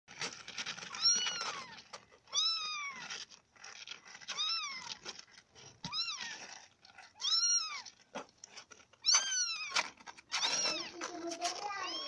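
A young kitten mewing over and over as it tries to climb out of a cardboard box: about seven thin, high mews, each rising then falling in pitch and lasting well under a second, a second or two apart.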